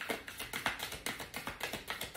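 A deck of tarot cards being shuffled by hand, the cards slapping against each other in an irregular patter of soft clicks.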